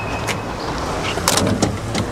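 A motor vehicle engine running steadily with a low rumble, with two short clicks, one just after the start and one past the middle.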